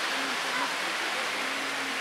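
Steady rushing wash of sea water, with faint voices in the background and a faint low drone setting in near the end.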